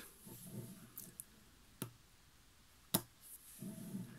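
Small neodymium magnet spheres clicking as they snap together while the magnet shapes are joined by hand: about four sharp clicks, the loudest about three seconds in, with faint handling rustle between them.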